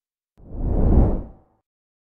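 A single whoosh sound effect from an animated subscribe-button end screen. It starts about half a second in, swells to a peak and fades out over about a second.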